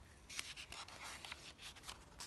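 Paper pages of a picture book being handled and turned: a faint, crackling rustle of paper.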